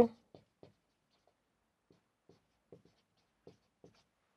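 Marker pen writing on a whiteboard: a handful of faint, short, irregular strokes as letters are written.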